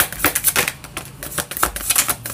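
A deck of oracle cards being shuffled overhand in the hands: an irregular run of sharp card clicks and snaps, several a second.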